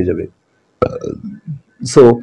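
A man's voice in short, broken fragments with a pause: the tail of a phrase, a brief silence, then low, weak voiced sounds before he starts speaking again.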